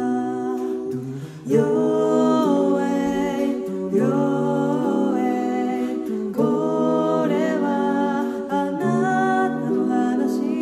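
Five voices singing a cappella in close harmony, with a low bass voice under sustained chords and no instruments. The phrases break and re-enter every few seconds, after a brief dip about a second and a half in.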